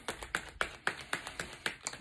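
A tarot deck being shuffled by hand, the cards dropping from one hand into the other with sharp clicks about four times a second.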